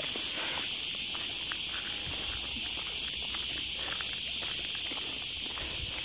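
Steady high-pitched buzzing of a cicada chorus, with faint footsteps on the ground.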